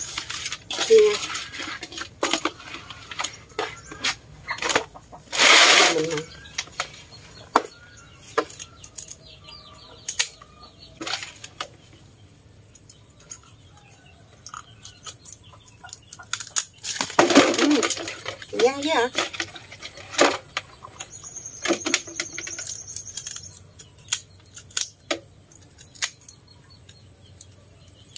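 Fish being cleaned by hand and with a knife over a metal basin: scattered clicks and knocks of the blade and fish against the basin, with longer scraping rasps about five seconds in and again at around seventeen seconds.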